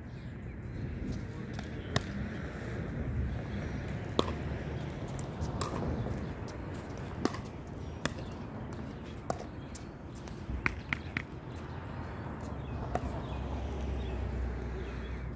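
Pickleball rally: sharp pops of paddles striking the plastic ball, about ten hits a second or two apart, with a quick run of three near the two-thirds mark as the players volley at the net.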